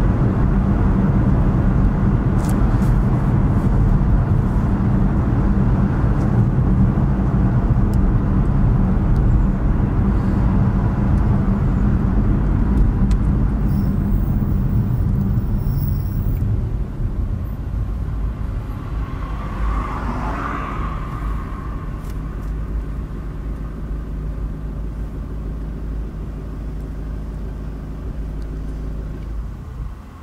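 Road and engine noise inside a moving car: a steady low rumble of tyres and engine, easing off over the second half as the car slows in traffic.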